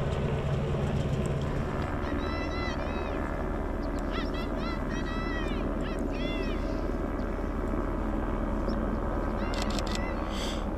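Small microlight aircraft engine running steadily at low revs, with groups of short, high, arching calls over it.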